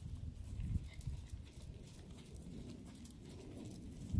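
Hoofbeats of a quarter pony cantering on arena sand: dull, soft thuds, with two stronger ones just under a second in.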